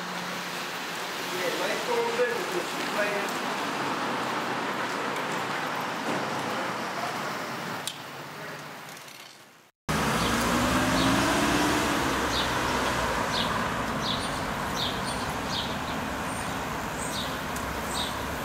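Outdoor city street noise: a steady wash of traffic that fades out to a moment of silence about ten seconds in. It comes back abruptly with a low rumble, one slow rising-and-falling engine tone and several short high chirps.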